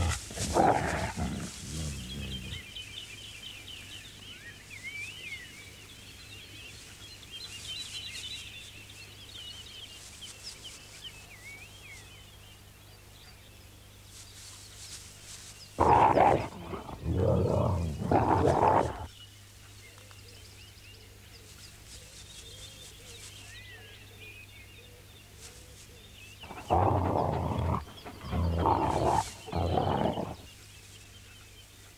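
Iberian wolves snarling and growling in three short, loud bouts: at the start, about halfway through, and near the end. It is a she-wolf warning the male wolves away while she feeds her pups.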